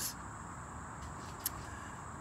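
Quiet, steady outdoor background rumble with a single brief click about one and a half seconds in.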